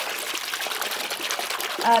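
A hand swishing through shallow bathwater, a steady splashing rush, stirring in a no-rinse wool wash so it foams.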